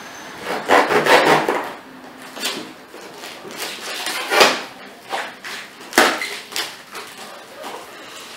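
A cardboard box being cut open with a knife: the blade scrapes and saws through the packing tape and cardboard, and the flaps rub and scrape as they are pulled apart. There are two sharp clicks, about four and a half and six seconds in.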